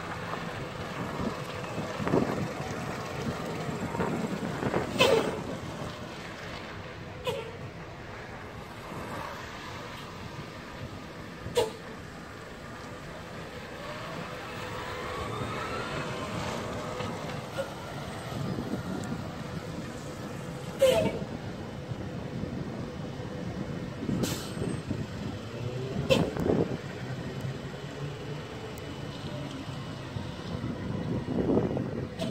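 Vehicle noise as an electric-converted cab-over truck chassis drives slowly across an open lot: a steady low rumble with about six short, sharp sounds scattered through it and a faint rising whine about halfway through.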